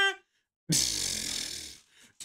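A man's pitched vocal whoop tails off, then after a short pause comes about a second of breathy, unvoiced laughter that fades out.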